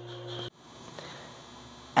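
A steady low electrical or machine hum that cuts off abruptly about half a second in, leaving faint room tone with one small tick.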